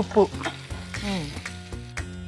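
Capsicum pieces sizzling in hot oil in a frying pan as they are stirred with a spatula, the sizzle swelling about a second in.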